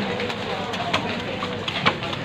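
Heavy cleaver chopping into a stingray's body: a couple of sharp knocks, the louder one near the end, over a steady busy-market background.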